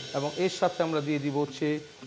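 A man speaking in short phrases; no frying sound stands out.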